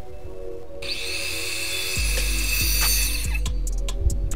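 A power miter saw cutting a pine board, a harsh cutting noise that starts about a second in and stops abruptly after about two and a half seconds, over background music.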